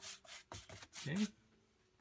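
A 2-inch bristle brush spreading wet acrylic gesso across a hardboard panel: a few brisk, scratchy brush strokes in the first second.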